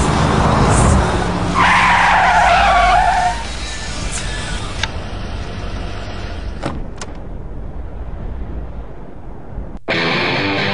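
First-generation Chevrolet Camaro SS sliding on snow: the engine revs and the tyres squeal for about two seconds. The engine then settles to a low rumble, with two sharp clicks a little past the middle.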